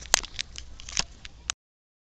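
Handling noise from a handheld camera being swung around: a quick run of sharp clicks and rubs from fingers on the body and microphone. About a second and a half in, the sound cuts out completely.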